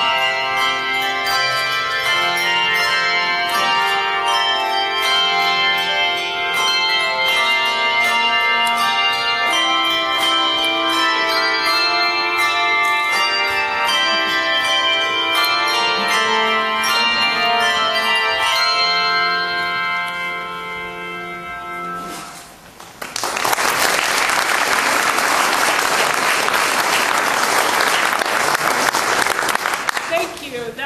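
Handbell choir playing, many bells struck together in chords. The final chord rings out and fades, then the audience applauds over the last several seconds.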